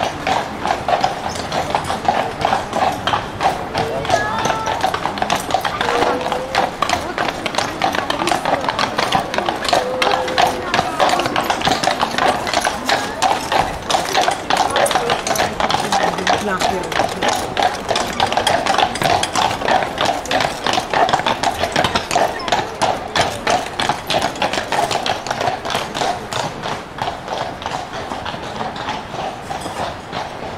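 A carriage horse's shod hooves clip-clopping on cobblestones in a steady walking rhythm, fading a little near the end, with passers-by talking faintly.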